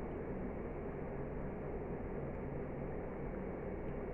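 Steady background noise, even and unchanging, with no distinct sounds standing out.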